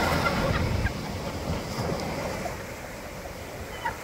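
Ocean surf breaking and washing up the beach, with wind on the microphone, louder for about the first second and then quieter.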